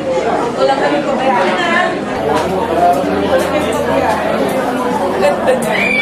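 Several people talking at once: an indistinct chatter of voices with no one voice standing out.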